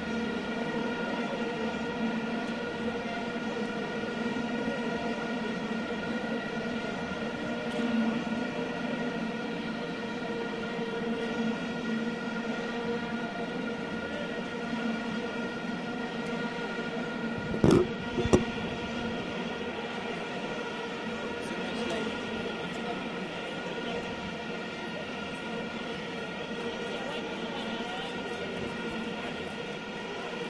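Football stadium crowd noise with a steady, many-toned drone held throughout, and two sharp bangs close together about eighteen seconds in.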